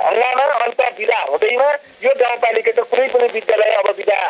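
Speech only: a person talking in Nepali in a recorded radio programme, with brief pauses.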